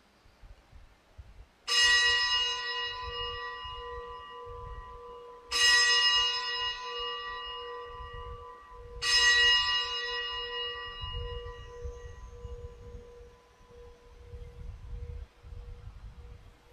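Altar bell struck three times, about four seconds apart, each stroke ringing out and fading slowly with a lower tone pulsing as it dies away: the bell rung at the elevation of the chalice during the consecration at Mass.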